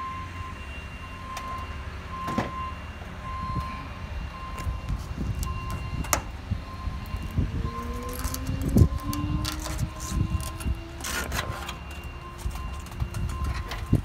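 Old fibreglass screen mesh being pulled off an aluminium pool-enclosure frame: rustling and scattered knocks over a low steady rumble. A faint short high beep repeats about once a second, and a low tone rises slowly in the middle.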